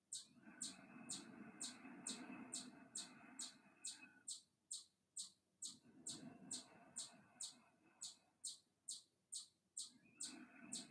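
Near silence with faint, evenly spaced high chirps, about two a second, over a soft hum that drops out twice.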